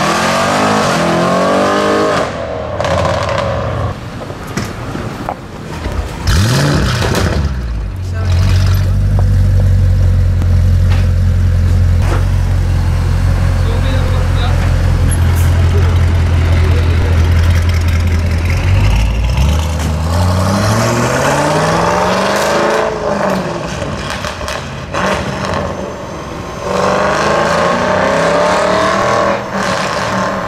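Audi RS6 C7 Avant's twin-turbo V8 breathing through Milltek straight pipes. It accelerates hard in a tunnel at the start. About six seconds in it fires up with a quick rise in revs and settles into a loud, steady idle, then revs up and falls back once, and accelerates again near the end.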